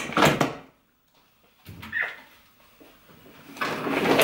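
Kitchen cupboard doors being handled: a knock with a short clatter at the start, another knock about two seconds in, then rustling as a wall cabinet is opened near the end.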